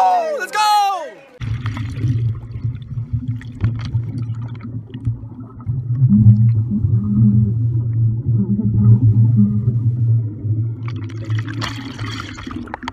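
Muffled, rumbling underwater noise and bubbling, heard as a camera records beneath the surface of a swimming pool. From about six seconds in, a person's voice shouting underwater comes through as a muffled, wavering drone. A shouted cheer above water tails off in the first second.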